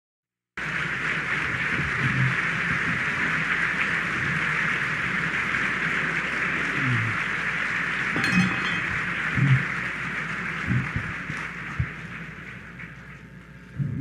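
Audience in a large hall applauding steadily, the applause dying away near the end, with a few faint voices in it.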